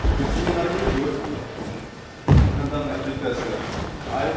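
Two dull thuds of a body landing on wooden boards during practice falls and rolls, a lighter one at the start and a heavier one a little over two seconds in, with low voices in the hall around them.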